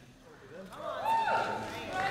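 A person's voice calling out, starting about half a second in, sliding up and down in pitch and then holding one high note.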